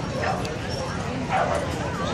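A small dog barking twice in short, high yips about a second apart, the second louder, over background crowd chatter.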